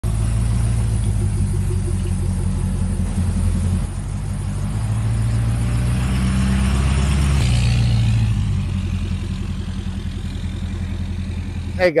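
A Ford 6.7-litre Power Stroke V8 turbo-diesel idling: a steady, even low rumble that shifts slightly in tone a couple of times.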